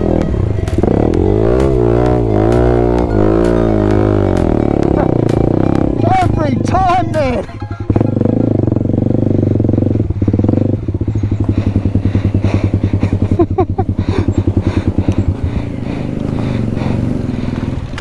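Single-cylinder four-stroke trail-bike engine running at low speed, its revs rising and falling with the throttle in the first half. About eleven seconds in it settles to a slow, even putter.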